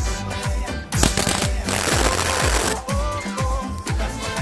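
Dance music with a steady beat, over which a MIG welding torch's arc crackles for about two seconds in the middle, laying weld onto the stub of a broken bolt.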